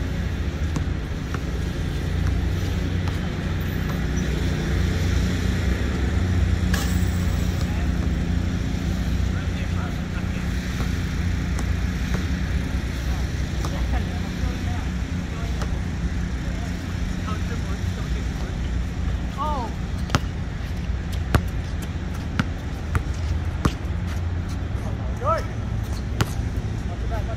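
Steady low rumble of distant traffic throughout. From about twenty seconds in comes a handful of sharp knocks, a basketball bouncing on the hard court, along with a few short squeaks.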